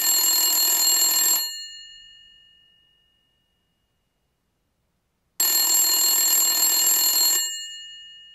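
Electric bell ringing twice. Each ring lasts about two seconds and they come about four seconds apart; after each, the bell's tones die away slowly.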